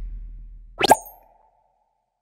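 Logo-reveal sound effects: a deep boom fading away, then about a second in a quick, sharp rising pop followed by a faint ringing tone that dies away.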